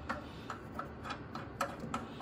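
Light, sharp clicks and ticks, about six in two seconds and unevenly spaced, from the resin vat of a resin 3D printer being handled and taken off.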